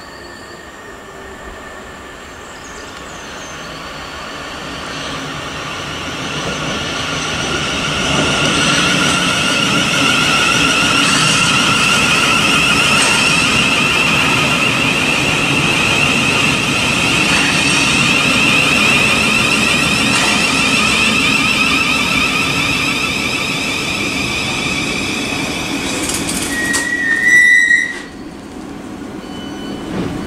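Thameslink Class 700 electric multiple unit running into the platform: its rumble and a steady high whine build up over the first several seconds and hold while the train passes. Near the end a brief, loud squeal comes as it draws to a stand, then the sound drops off suddenly.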